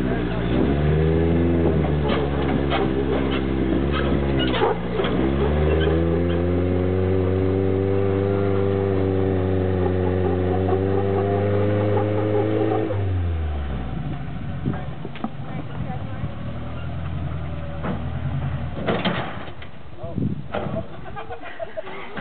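Rock crawler buggy's engine revving hard and held at high revs under load as it climbs a near-vertical rock ledge. Its pitch dips briefly about five seconds in, then slowly rises until the revs drop off about thirteen seconds in. After that the engine runs lower, with scattered sharp knocks.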